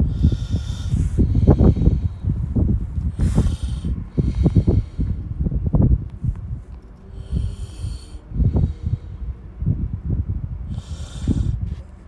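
A man breathing heavily close to the microphone in repeated short breaths, over irregular low rumbling bumps on the microphone.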